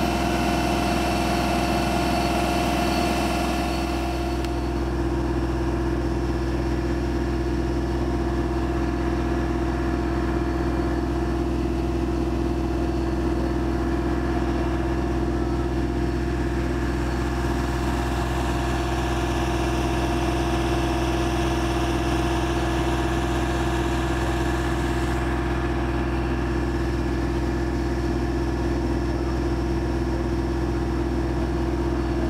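Construction machinery engine running steadily at a constant speed, an even drone that holds the same pitch.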